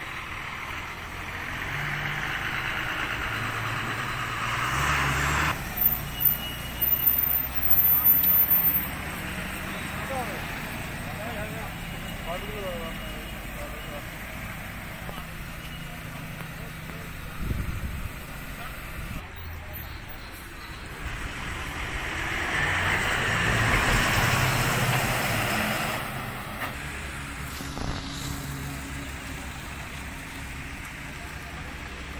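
Road traffic passing on a highway, with two vehicles swelling and fading by, one early and one about three quarters of the way through, under indistinct voices. A cluster of loud bumps comes about six to nine seconds in.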